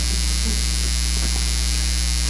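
Steady low electrical mains hum, a constant drone with no change through the pause.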